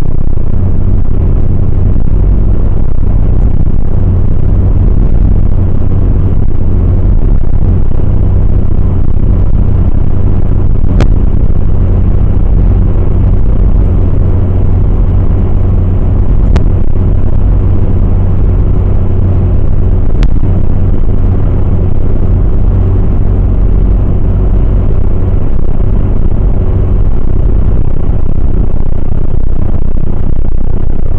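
Steady, loud low rumble of a car driving at motorway speed, heard from inside the cabin: road and drivetrain noise with a faint steady hum above it. Three faint clicks come in the middle stretch.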